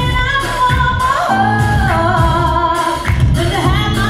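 Live R&B performance: a woman singing into a microphone, holding long notes that slide in pitch, over a band with heavy bass and drums.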